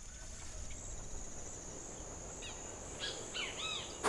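Countryside ambience: birds chirping, with several short curved calls in the last second and a half, over a steady high-pitched insect drone.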